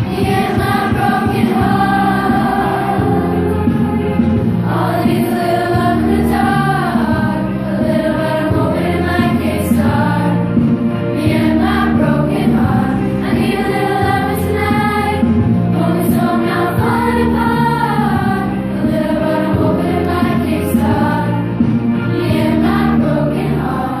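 A junior high girls' choir singing a song together, held notes moving from pitch to pitch, over a low accompaniment.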